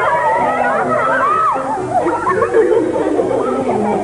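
A group of girls shouting and squealing together in many overlapping, rising-and-falling cries while playing a rough-and-tumble circle game.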